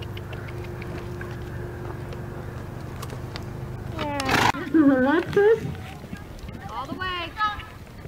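A quiet, steady low hum for about four seconds, then a person's voice in several short, unintelligible calls.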